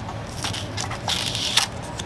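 Cardboard sleeve being slid off a metal pencil tin: papery scraping and rustling with a few light clicks, loudest about a second in.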